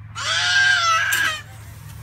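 A toddler gives a single high-pitched squeal, a little over a second long, rising slightly then held, over a steady low hum.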